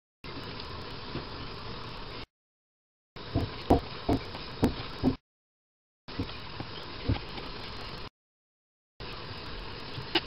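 Kitchen knife cutting raw pigeon meat on a plastic chopping board: sharp knocks of the blade against the board, a cluster of about six of them near the middle. The sound drops out to total silence for about a second three times.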